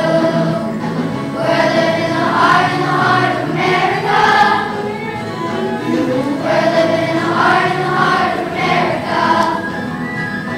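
A student choir singing, holding notes in phrases with brief breaks between them.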